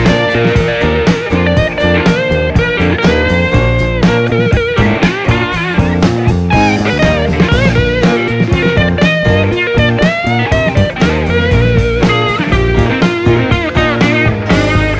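Live rock band playing an instrumental passage: a semi-hollow electric guitar plays a lead line with bent notes over drums, bass and keyboard.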